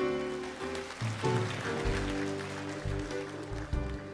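A live church band playing music: held chords over low bass notes.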